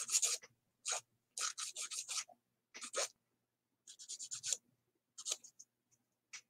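Hands rummaging among craft tools, a string of short scraping and rubbing rustles.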